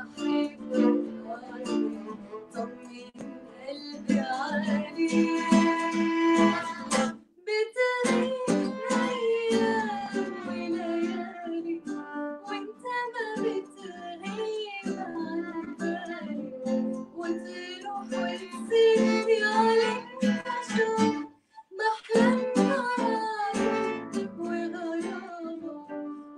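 A woman singing a song with violin and acoustic guitar accompaniment; the sound cuts out briefly twice.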